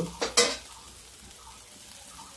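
Two short sharp knocks near the start, then marinated chicken pieces sizzling faintly and steadily on a wire grill over a glowing fire.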